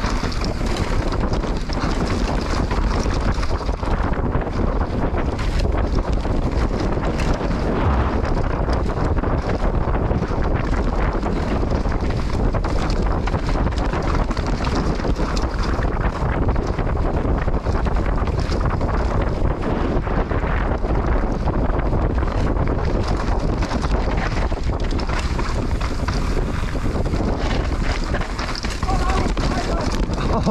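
Wind rushing loudly over the microphone of a mountain bike rider's action camera during a fast descent of a dirt trail, mixed with tyre noise on dirt and frequent rattling clicks from the bike.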